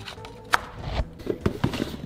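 A sharp click, then a thud and a quick run of light knocks as pieces are pressed and set into place by hand on a wooden floor.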